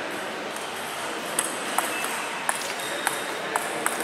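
Table tennis rally: the ball clicking sharply off bats and table, six quick strikes beginning about a third of the way in, roughly every half second.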